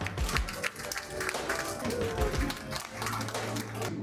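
Audience clapping, many hands at once, over background music.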